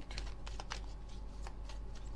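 A deck of glossy oracle cards being shuffled by hand: a quick, irregular patter of card edges flicking and slapping against one another.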